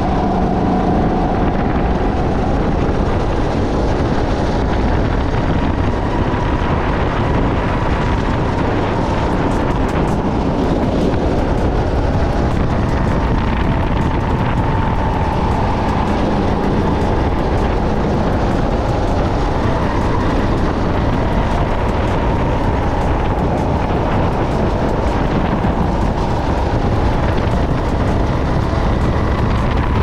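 Sodi SR5 rental go-kart engine running under load from the driver's seat, a steady, loud drone mixed with track and rumble noise. Its pitch rises and falls gently with speed through the corners.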